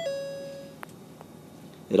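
Electronic chime: a short tone that steps up in pitch, then holds a steady lower note for about half a second while fading away, followed by two faint clicks.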